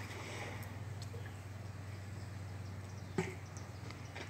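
Quiet background: a faint steady low hum under a light hiss, with one brief soft noise about three seconds in.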